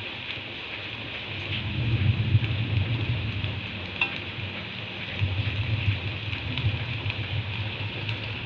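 Pieces of tempeh frying in shallow oil in a wok, a steady sizzle, while a metal spatula scrapes and taps the pan as the nearly done pieces are turned and lifted, with one sharp tap about halfway. A low rumble swells twice underneath.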